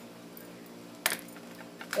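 A few sharp clicks and taps from something being handled close to the microphone: one strong click about a second in, then two or three quicker ones near the end.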